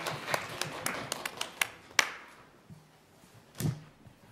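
Scattered light clapping and sharp taps, thinning out over the first two seconds and ending with one louder clap or knock. A brief voice sound comes near the end.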